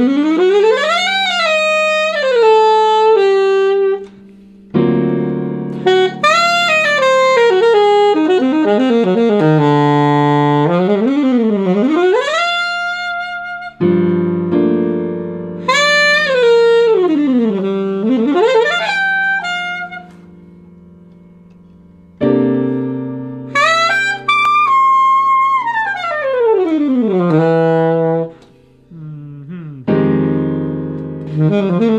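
Alto saxophone running chord scales up and down, one note at a time, over held piano chords; a new chord sounds about every eight to nine seconds, with short pauses between runs.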